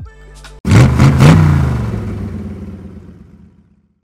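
Audi's closing sound logo: a single loud, deep hit about half a second in, with an engine-like swell, dying away slowly over about three seconds.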